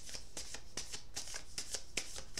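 A tarot deck being shuffled by hand: a quick, even run of soft card clicks, about six a second.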